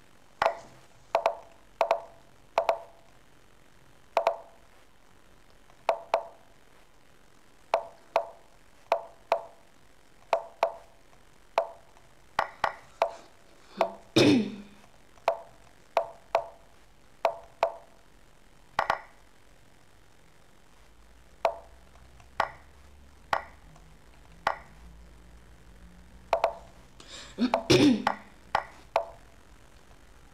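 Online chess move sounds: a quick run of short, sharp clicks, spaced irregularly about once a second, each with a brief ring, as moves are played in a fast bullet game. Twice, about halfway through and near the end, a louder sound with a falling pitch stands out.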